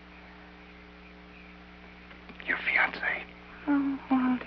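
Steady electrical hum in an old film soundtrack. About two and a half seconds in there is a brief breathy whisper, and a voice begins near the end.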